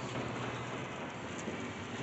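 Pincus hydraulic elevator's stainless steel sliding doors closing, a steady even rumble with no distinct bang.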